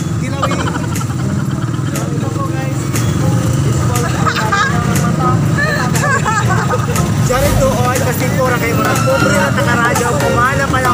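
Busy street noise: people talking over a steady low rumble of vehicle traffic.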